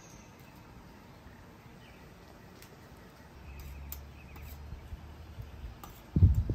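Quiet outdoor background with a faint low rumble from about three and a half to five seconds in, and a few soft clicks.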